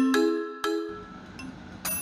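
A short jingle of struck, ringing notes fades out in the first second. Just before the end, the air fryer's mechanical timer bell rings once with a sharp high ding, signalling that the cooking time is up.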